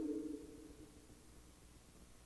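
Near silence in a pause between a man's spoken words: the tail of his voice fades out within the first half second, leaving only faint recording hiss.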